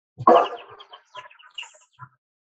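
Bat echolocation calls from a bat-detector recording, brought down into the human hearing range: a loud burst just after the start, then a rapid run of short chirps.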